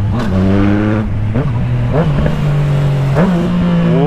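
Yamaha MT-09 three-cylinder motorcycle engine running under way in traffic, heard from the rider's position. Over a steady drone there are several quick throttle blips that rise and fall in pitch, and the engine note steps down about a second in.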